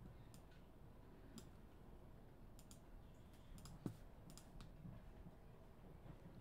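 Faint, irregular clicking, about ten clicks, from a computer mouse scrolling a page, over near silence.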